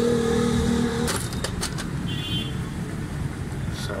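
Steady low rumble of a motor vehicle running nearby, with a few light clicks about a second in as a handful of spark plugs is handled.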